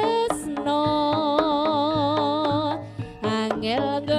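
Live jaranan music: a sustained, wavering melody line held over drum strikes, dipping briefly near the end.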